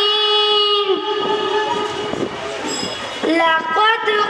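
A girl's amplified voice holds one long, steady sung note of a melodic chant, which ends about a second in. A noisy stretch follows, and she starts singing again a little after three seconds in.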